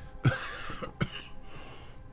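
A man's short, breathy laugh with sharp catches in the throat, close to a cough.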